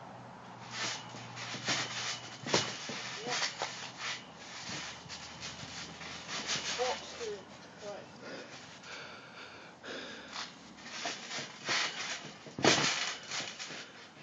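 Trampoline in use: irregular thumps and rustles of feet on the mat, springs and safety net, with one loud thump near the end.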